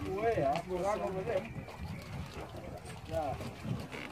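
People talking, with voices in the first second and a half and again briefly near the end.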